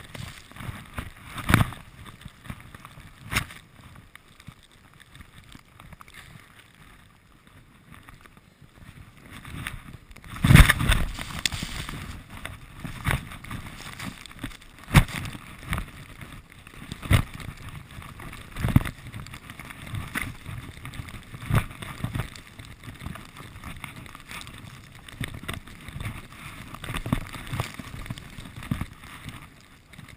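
Skis turning through deep powder snow, with a rushing of snow and wind on the microphone and a thump at roughly each turn, about one every one and a half to two seconds after the first third; the loudest thumps come about ten seconds in.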